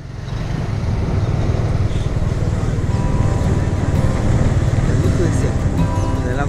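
Small motorbike engine running steadily on the move, with heavy wind rumble on the microphone. It fades in from silence at the start, and faint music and a voice come in near the end.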